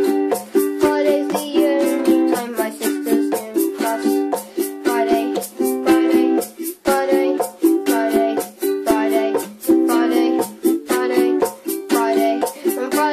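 Ashbury ukulele strummed in a steady, even rhythm of chords, a few strokes a second, with no singing over it.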